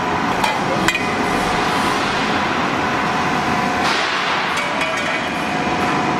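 C-purlin roll forming machine running: steel strip feeding through the forming rollers with a steady mechanical noise and a faint whine, and a few light metallic clinks in the first second.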